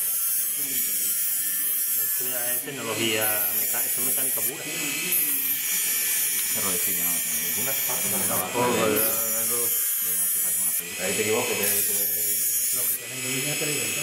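Mini rotary tool spinning a fibre cut-off disc, grinding a steel hairpin into a tapered antenna mast and throwing sparks. Its high whine dips in pitch several times as the pin is pressed against the disc.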